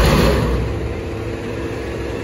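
Front-loader garbage truck's diesel engine revved to power the hydraulics while its forks hold a recycling container tipped over the cab. It is loudest in a surge right at the start, then settles into a steady drone.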